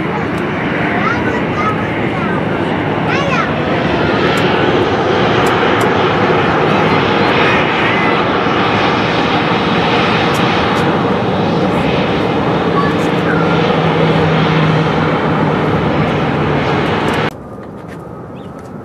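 Jet engines of a Sun Country Boeing 737-800 running loud and steady as it rolls along the runway after landing, swelling a few seconds in. The sound cuts off abruptly near the end.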